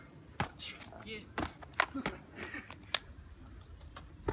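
Several sharp knocks and slaps of feet and hands landing on a metal railing and concrete wall, spaced irregularly, with short bits of voice in between.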